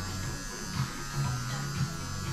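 A steady low electrical buzz and hum.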